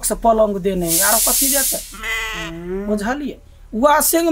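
Speech: one voice talking animatedly, with a long hissing 'sss' about a second in and a drawn-out vowel shortly after.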